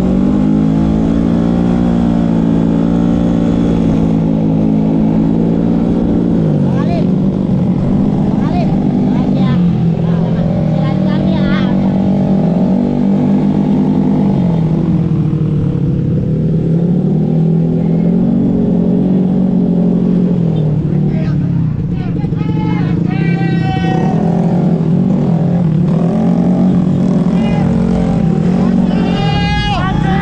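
Ported Vespa Matic scooter engine revving while riding, its pitch rising and falling every few seconds as the throttle is worked.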